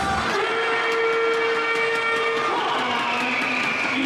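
Music from the arena sound system: a long held note, then lower notes about two and a half seconds in, over a quick ticking beat.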